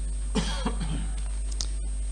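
A low, steady hum in the recording, with a couple of faint, soft sounds about half a second in.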